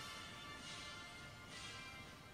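Faint, soft background music with steady held tones.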